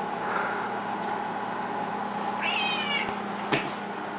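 Cat meowing once, a short call about two and a half seconds in, followed by a thump.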